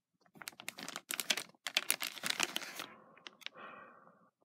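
Sealed clear plastic toy bag crinkling as it is handled and turned over: a dense run of sharp crackles that eases into a softer rustle in the last second.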